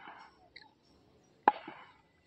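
Mostly very quiet, with one short, sharp knock about one and a half seconds in.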